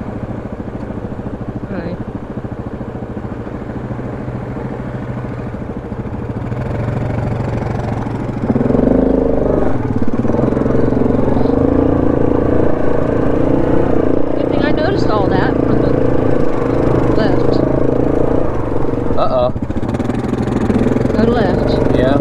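Yamaha 700 ATV engine running at low throttle, then about eight and a half seconds in getting louder as the quad pulls away under throttle and rides on along a dirt trail, with a second ATV running just ahead.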